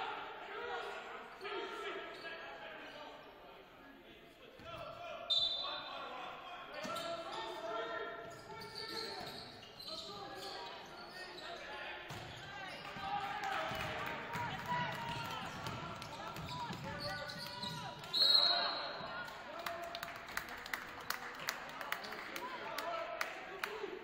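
Basketball game sounds in a large gym: indistinct players' and spectators' voices, with a referee's whistle blown briefly about five seconds in and again, loudest, a few seconds before the end. In the last couple of seconds a basketball is dribbled, with sharp, evenly spaced bounces on the hardwood floor.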